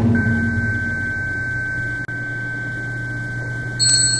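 Yinqing (a small bowl bell on a wooden handle) struck with its metal rod, ringing with one steady high tone. It is struck again just before the end with a brighter sound.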